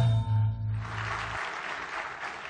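Dance music ending on a held final chord that dies away, with audience applause breaking out about a second in and carrying on.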